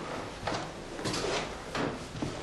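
Bed linen rustling and swishing in several short strokes as a pillow and sheets are handled while a bed is made.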